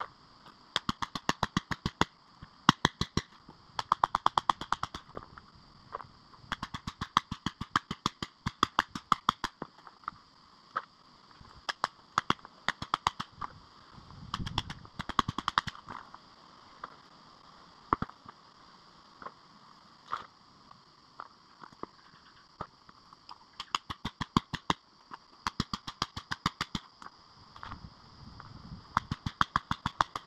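Hammer striking a chisel into a quartz seam in sandstone, in quick runs of sharp strikes, several a second, broken by short pauses.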